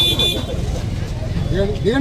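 Street commotion around a car: a steady low rumble of traffic and crowd voices, with a brief high-pitched toot in the first half-second and a man's voice calling out near the end.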